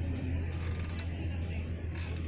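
Metal pivots of an outdoor-gym rowing machine creaking as it is worked back and forth, over a steady low hum.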